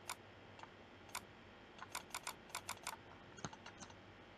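Faint, sharp clicks of a computer keyboard: one right at the start, another about a second in, a quick run of about seven clicks around two seconds, then a few fainter clicks near the end.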